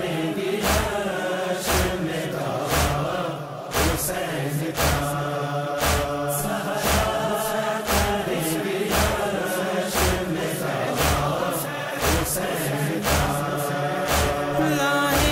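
Group of voices chanting a Shia mourning chant (nauha) for Hussein, kept to a strong beat about once a second.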